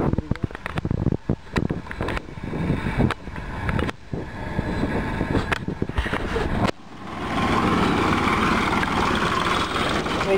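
Choppy, gusty noise on the microphone, then from about seven seconds in a tractor engine running close by as it passes with its trailer.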